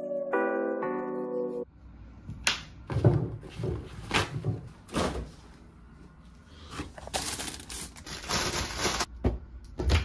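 Background music with a slowly falling tone stops suddenly about a second and a half in. Then come kitchen handling sounds: a refrigerator and a cupboard door being opened, with a string of clunks and knocks and a couple of longer rustles.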